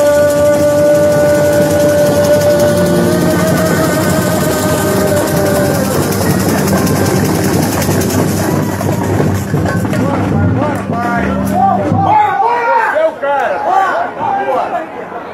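A male samba singer holds one long sung note for about six seconds over a samba band with percussion. The music dies away around ten to twelve seconds in, leaving people talking.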